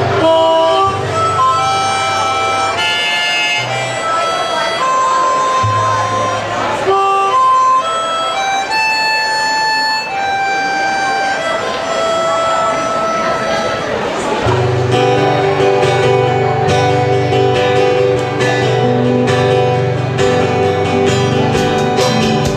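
Live band music: a harmonica plays the melody in held notes over acoustic and electric guitar accompaniment. About two-thirds of the way through, the rest of the band comes in with fuller sustained chords.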